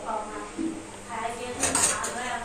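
Stainless steel utensils clinking against each other in a dish rack as a steel tumbler is pulled out, with a quick cluster of metallic clinks near the end.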